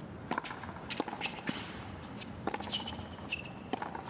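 Tennis ball being hit back and forth on a hard court: the serve, then racket strikes about a second or more apart, each a sharp pop, with the ball's bounces between them.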